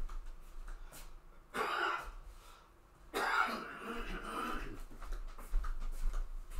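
A man clearing his throat twice: a short rasp about a second and a half in, then a longer one about three seconds in.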